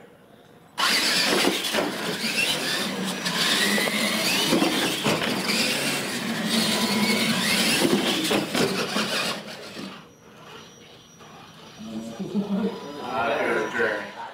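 Electric RC monster trucks taking off together about a second in, their motors and gearing whining with a squeal whose pitch rises and falls with the throttle, for about nine seconds before dropping away. Voices come in near the end.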